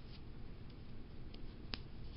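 Low room noise with a faint tick followed by one sharp click a little later, near the end.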